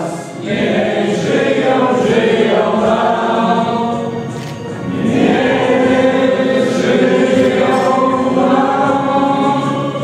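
A choir of voices singing with musical backing, in two long sustained phrases with a brief dip about four to five seconds in.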